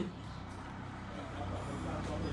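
A steady low mechanical hum from a running motor, with faint voices in the background.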